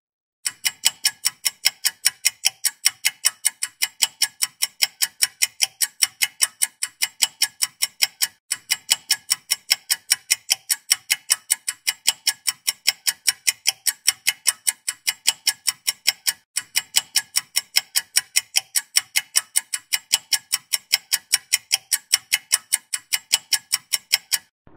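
Clock-ticking sound effect used as a thinking-time countdown: a fast, even tick about four times a second, which drops out briefly twice.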